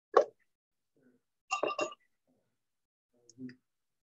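Short knocks and clatter of plastic garnish jars being handled and set down: a sharp knock just after the start, a louder cluster of clicks about a second and a half in, and a faint knock near the end.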